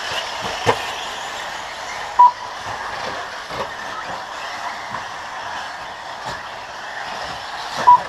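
Radio-controlled racing buggies running on a dirt track: a steady whir with a few light knocks. Two short electronic beeps, about two seconds in and again near the end, are the loudest sounds, typical of a lap-counting system as a car crosses the line.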